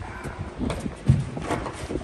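A one-year-old Malinois gripping and tugging on the arm of a bite suit: scuffling and irregular knocks, the loudest about a second in, with short noises from the dog as it holds the bite.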